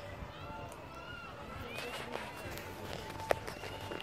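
Faint distant voices over the light, steady rustle of someone running down a grassy hill, with one sharp click about three seconds in.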